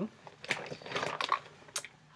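Clear plastic bag crinkling and rustling as it is handled and opened, with a few sharp clicks.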